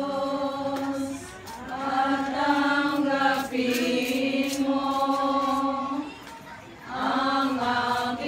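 A group of mixed voices singing a slow song together in long held notes, pausing briefly between phrases about a second in and again about six seconds in.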